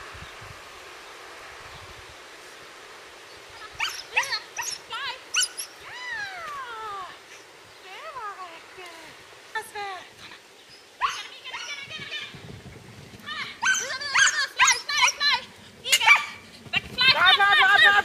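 A dog yipping and whining in short high-pitched calls, several sliding down in pitch, starting a few seconds in and coming thick and fast near the end.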